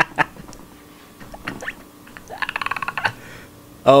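A man laughing in short bursts near the start, then a rapid run of laughter pulses about two and a half seconds in.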